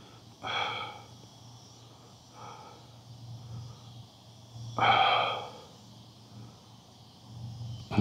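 A person breathing out hard through the mouth while catching his breath after a brisk walk. Two strong half-second exhales come about four seconds apart, with a softer one between them.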